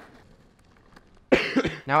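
A sick man coughing once, a short harsh cough a little past halfway through.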